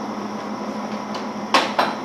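Monarch 18CY engine lathe running with a steady hum. Near the end come two sharp metallic clunks about a quarter second apart as the feed-reverse lever is pulled up and the reversing gears engage.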